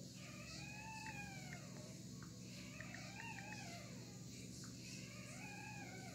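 Three faint, drawn-out meow-like calls from a small animal, each rising and then falling in pitch, spaced about a second apart.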